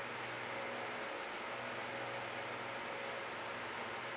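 Steady background hiss with a faint low hum and no distinct events.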